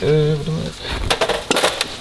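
Metal clinks and knocks as a heavy multi-piston brake caliper is set down onto a slotted brake disc on a steel platform scale: several sharp clacks in the second half.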